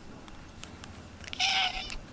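A domestic cat gives one short meow, about half a second long, near the end.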